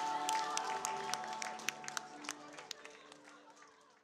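A crowd clapping in scattered, uneven claps, with voices, over music; everything fades out steadily to silence by the end.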